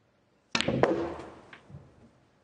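Snooker shot with the blue potted: a sharp, loud click of the balls about half a second in, then three or four lighter knocks over the next second as the balls run on and the blue drops, fading away.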